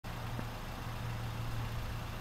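A steady low hum, like an engine idling, over even background noise.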